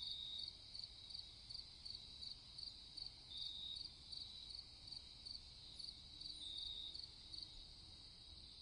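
Faint night insects chirping in an even rhythm, about three high chirps a second, with a longer trill roughly every three seconds.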